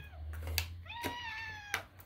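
A cat meowing once: a single drawn-out meow about a second long that rises a little and then falls away, with a sharp click just before it and another as it ends.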